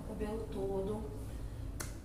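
A soft, indistinct voice, much quieter than normal talk, with one sharp click near the end.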